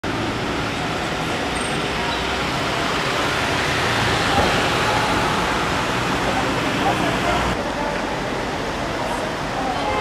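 Steady outdoor street noise, a dense hiss of traffic with indistinct voices mixed in. The upper hiss thins out abruptly about three-quarters of the way through.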